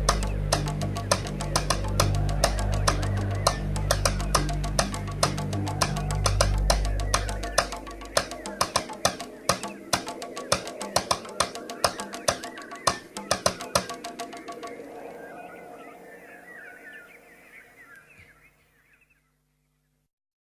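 Euro house dance track ending. The bassline drops out under half-way through, leaving a fast percussion pattern that fades. Some high, wavering sounds trail off into silence just before the end.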